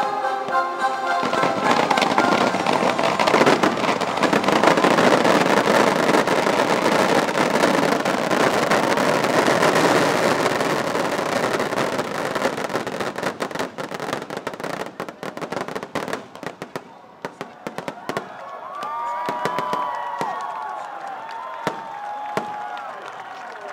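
Finale barrage of aerial fireworks, many shells bursting and crackling at once, thinning after about thirteen seconds to scattered single bangs. Near the end a crowd cheers and whistles as the bursts stop.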